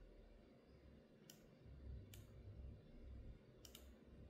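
Near silence with four faint, sharp clicks: one a little over a second in, another about a second later, and a quick pair near the end.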